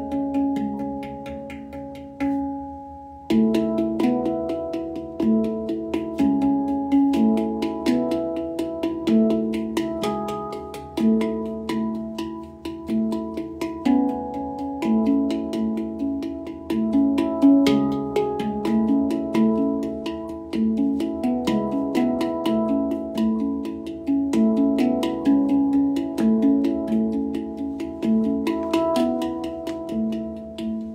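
Steel handpan played by hand: a continuous flow of struck notes that ring and overlap into a melodic pattern, with a brief lull about three seconds in before the playing picks up again.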